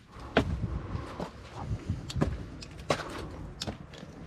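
Footsteps on a rotten wooden floor covered in loose planks and rubble, with about five irregular knocks and cracks of the boards as they take the weight.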